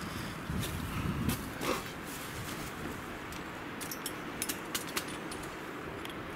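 Steady wind noise through a snowy forest, with a few light clicks and crunches scattered through it.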